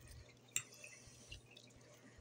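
Quiet eating sounds from a fork working through a plate of grits: a few small sharp clicks, the loudest about half a second in, over a faint low hum.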